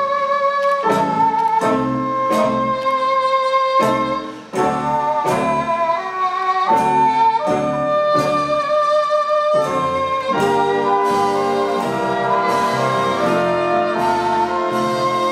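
Big band jazz ensemble, saxophones and brass playing a slow ballad in held, shifting chords, with a brief break about four and a half seconds in.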